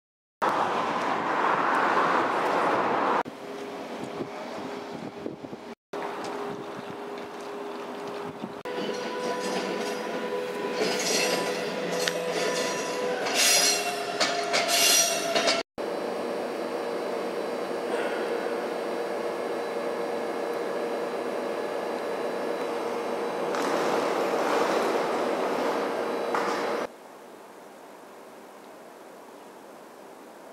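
Railway sounds in short clips cut together. A passenger train moves through with a high-pitched metallic squeal that is loudest about eleven to fifteen seconds in and cuts off abruptly. This is followed by a steady train running noise with a held drone, which drops away near the end.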